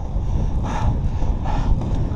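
Wind rumbling on the microphone with the rolling hiss of inline skate wheels on asphalt, swelling twice.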